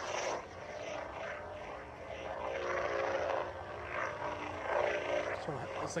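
Xenopixel V3 sound board of a SabersPro Revan replica lightsaber playing its blade hum through the hilt speaker just after ignition, the ignition sweep dying away at the start. The hum swells and falls as the blade is swung.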